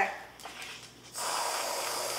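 Aerosol can of whipped cream spraying onto a bowl of cake: a steady hiss that starts about a second in.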